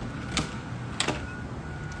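Two sharp knocks, about two-thirds of a second apart, over a low steady hum.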